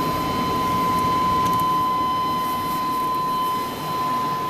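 Steady whir of a running machine with a constant high-pitched whine.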